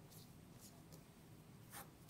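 Near silence: a faint low hum with a few soft ticks and a brief scratchy rustle near the end.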